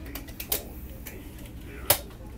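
Hard-shell suitcase's telescopic handle being pulled up: a few light clicks, a sharper click about half a second in, then a loud sharp click near the end as the handle locks at full extension. A low rumble runs underneath.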